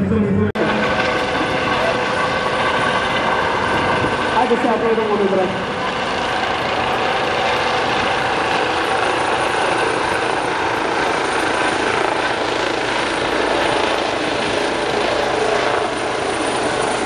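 Airbus H135 twin-turbine helicopter hovering close by while its rescue hoist is in use: steady rotor and turbine noise with several constant whining tones. The sound cuts in abruptly about half a second in.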